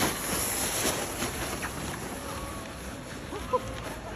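Plastic saucer sled sliding down packed snow: a steady scraping hiss. A short high sound cuts in about three and a half seconds in.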